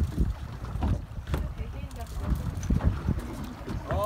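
Wind buffeting the microphone aboard a fishing boat at sea, a low uneven rumble, with a few faint clicks and distant voices underneath.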